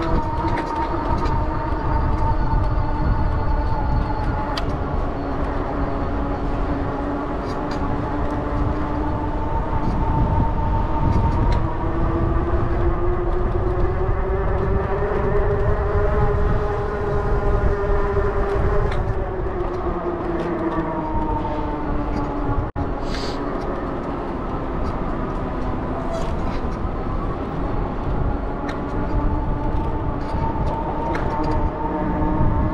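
Electric bike's drive motor whining steadily while riding, its pitch rising slowly and then falling again with speed, over a constant low rumble of wind on the microphone. The sound drops out for an instant about two-thirds of the way through.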